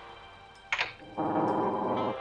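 Cartoon sound effects: a quick falling whoosh about two-thirds of a second in, then a steady buzzing held sound that cuts off near the end.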